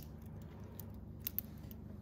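A few light metallic clicks, two sharper ones close together just past a second in: a stainless steel watch bracelet clinking as the watch is picked up and handled.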